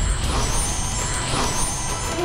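Dramatic TV-serial background score: a heavy low rumbling drone with two sweeping whooshes, about half a second and a second and a half in, and a few thin high sustained tones.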